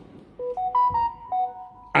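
A short electronic chime: a little melody of several clear, pure notes stepping up and down in pitch, lasting about a second and a half.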